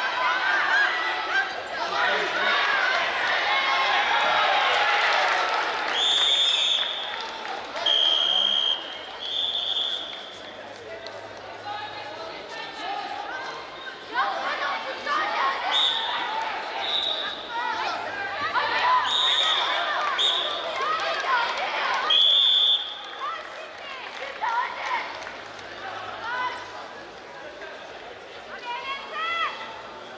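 Wrestling arena with crowd and coaches shouting throughout, loudest in the first few seconds and again through the middle. A referee's whistle sounds in a string of short, shrill blasts, about nine of them between about 6 and 23 seconds in, around a scoring exchange on the mat.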